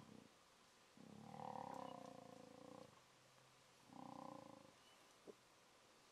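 Lion calling faintly: two drawn-out pitched calls, the first about two seconds long and the second under a second, followed by a brief click.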